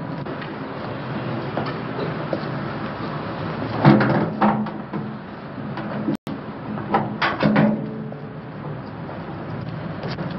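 Metal clunks and rattles of a car's hood being handled, in two short bursts about four seconds in and again about seven seconds in, over the steady hum and hiss of an old film soundtrack.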